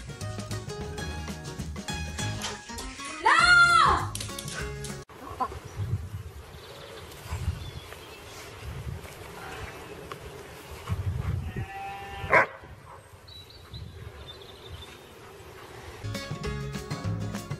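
A husky gives one short howl that rises and falls in pitch, a few seconds in. Later a sheep bleats once near the end.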